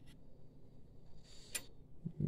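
Faint handling of a sheet-metal bracket being fitted into a printer chassis, with one light click about one and a half seconds in.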